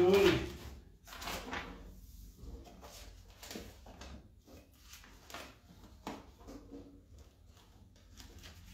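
The last organ note stops in the first half second, then pages of a hymnal are leafed through: a string of soft, irregular paper swishes and rustles.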